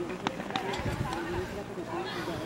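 Distant, indistinct voices of players and spectators at an outdoor football pitch, with a few faint short knocks in the first second.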